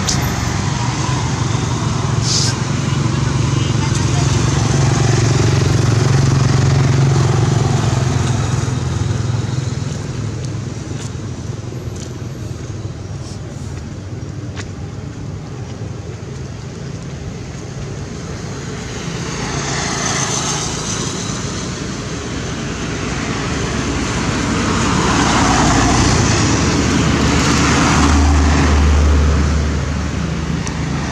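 Motor-vehicle traffic: a steady engine drone with vehicles swelling past and fading away, loudest in the first third and again near the end.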